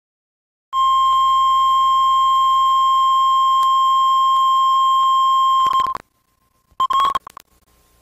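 Videotape line-up tone playing over colour bars: a loud, steady single 1 kHz beep that starts just under a second in and cuts off abruptly about five seconds later. A brief blip of the tone with clicks follows about a second after.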